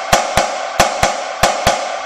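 Premier marching snare drum struck with a single stick in slow doubles (diddles), each note let rebound and stroked out. Pairs of strokes come about a quarter second apart, a pair roughly every two-thirds of a second, with the drum head ringing between strokes.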